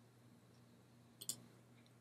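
Near silence, with one short click a little past halfway.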